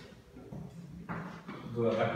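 A pause in a man's speech. A short scratchy noise comes about a second in, and his voice starts again near the end.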